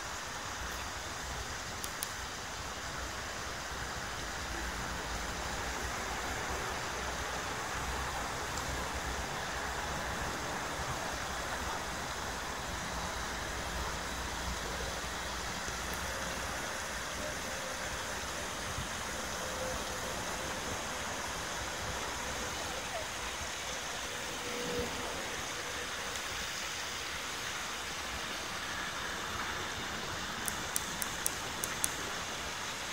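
Steady hum of city road traffic, an even noise with no single sound standing out.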